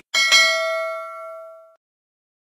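Notification bell sound effect: a bright metallic ding, struck twice in quick succession, ringing out for about a second and a half before cutting off suddenly.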